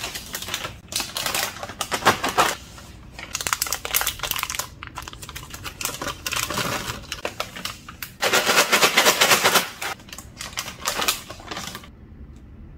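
Plastic snack pouch crinkling and rustling as it is handled and opened, in irregular spurts, with a longer, louder stretch of crackling about eight seconds in.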